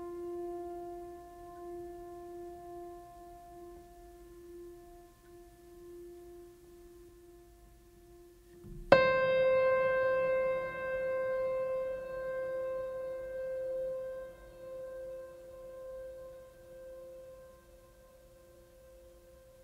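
Background music of long held notes that ring on. About halfway through, a sharp new note is struck and slowly fades away.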